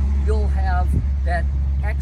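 A man's voice speaking, over a steady low rumble.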